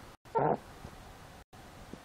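A piglet gives one short grunt about a third of a second in, while being tickled.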